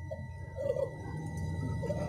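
A pause between a lecturer's sentences: a low steady background hum with a thin, steady electrical whine, and a brief faint sound about half a second in.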